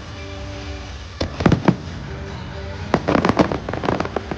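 Aerial fireworks bursting over show music: a few sharp bangs a little over a second in, then a dense flurry of bangs and crackles from about three seconds in, the loudest part. Held music notes play underneath.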